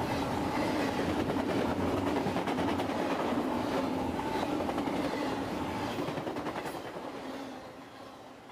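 A train running on rails, its wheels making a fast, steady clatter that fades out near the end.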